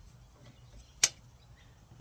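A single sharp click about a second in, over a faint low hum.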